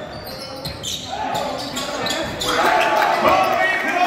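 Basketball bouncing and sneakers squeaking on a hardwood court, with voices shouting from about a second in that grow into louder cheering from about two and a half seconds.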